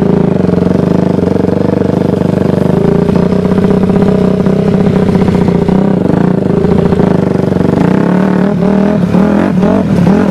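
Dirt bike engine running at a fairly steady pitch while riding. About two seconds from the end come rattling and knocks as the bike goes over rougher ground.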